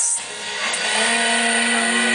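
Live band music led by electric guitar, a loud, dense and harsh wash of sound, with a steady held note coming in about a second in.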